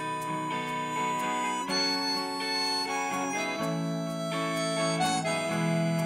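Harmonica playing a solo of held, wailing notes that change pitch every second or so, over a live band's guitars and a steady drum beat with ticking cymbals.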